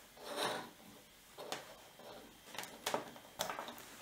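Hands handling USB cables and jumper wires around two Arduino boards on a wooden desk: a short rustle, then a few light clicks and taps.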